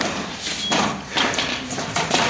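Footsteps of fencers walking on a hard wooden piste floor, a run of irregular steps and shoe scuffs.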